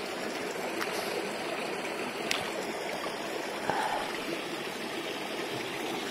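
Shallow rocky mountain stream running over stones, a steady trickling rush of water. A brief faint splash comes about four seconds in as a hand is dipped into the water.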